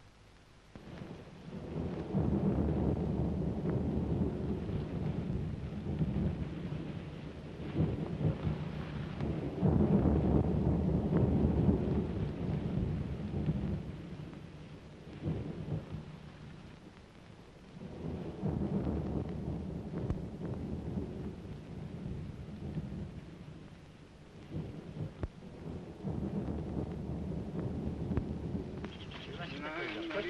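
Storm sound effect: rumbling surges of wind and sea, each swelling and fading again, about every eight seconds.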